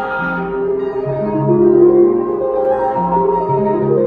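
Synthesizer music: layered held notes that change every second or so over a shifting bass line.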